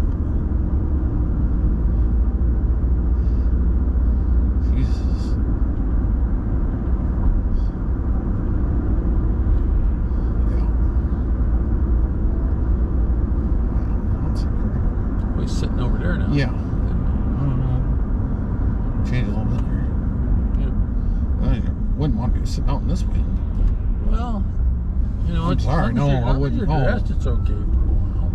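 Steady low rumble of a car's engine and tyres heard from inside the cabin while driving along a city street, with a few scattered short clicks.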